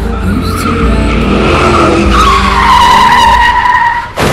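Tyres screeching in a skid: a loud, high screech that builds over the first two seconds, then holds and sinks slightly in pitch before cutting off suddenly at the end.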